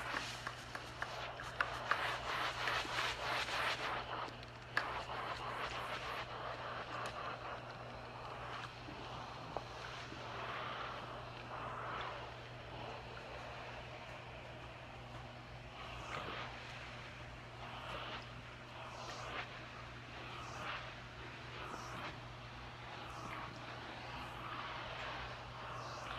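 Steam iron hissing as it puts steam into a lace sweater for steam blocking, strongest for the first few seconds, then coming and going in softer swells.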